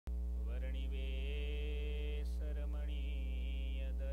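A man's voice chanting a slow, drawn-out devotional invocation in two long phrases with a breath between them, over a loud steady electrical mains hum.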